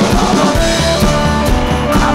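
Rock song soundtrack with a steady beat of about two hits a second.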